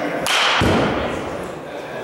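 A baseball bat hitting a pitched ball with a sharp crack, followed about a third of a second later by a duller, heavier thud.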